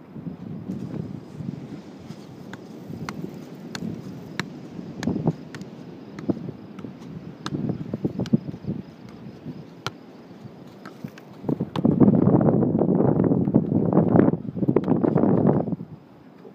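Scattered soft taps of a football being juggled on foot and knee, over a low outdoor rushing noise; for the last few seconds a louder rushing noise swells over it.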